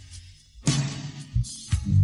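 Live band music from a concert recording: the sound nearly drops out for about half a second, then a few separate drum hits with low bass notes come in, and the full band returns loudly at the end.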